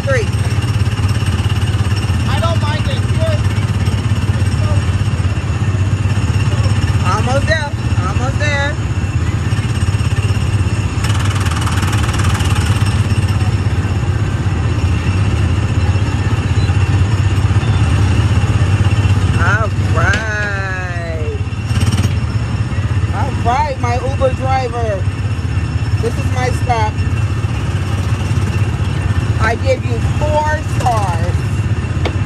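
Small engine of a go-kart-style ride car running with a steady low drone as it is driven, with a brief hiss about eleven seconds in.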